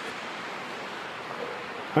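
Steady, even hiss of wind, with no separate footsteps or other events standing out.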